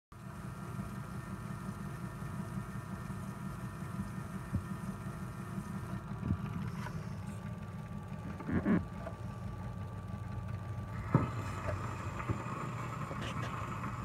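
78 rpm shellac record's lead-in groove playing on an RCA Victor Victrola 55U radio-phonograph: steady low rumble and surface noise with a few scattered clicks.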